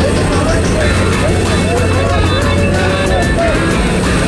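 Loud, steady roar of the aircraft's engine and slipstream at the open jump door, with music with a melody line laid over it.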